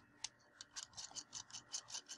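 Faint, rapid clicking, about six or seven ticks a second, from the metal threads of an iClear 30 clearomizer being screwed onto the threaded connector of an Innokin iTaste VTR mod.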